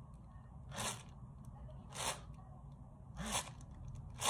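Thin clear plastic bag crinkling as it is squeezed and twisted in the hands, in three short rustles about a second apart.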